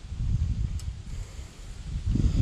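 Wind on the camera microphone: an uneven low rumble that swells and fades.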